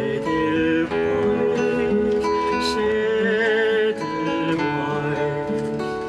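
A repaired secondhand nylon-string classical guitar being fingerpicked, with a man singing along in a voice with a wavering vibrato in the middle of the phrase.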